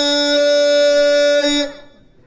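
A man's voice holding one long, steady sung note of chanted Amazigh tanddamt verse, fading out about three-quarters of the way through.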